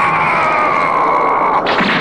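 A cartoon character's long drawn-out battle yell as he charges, sliding slowly down in pitch, cut off about one and a half seconds in by a short burst of noise from a fight sound effect.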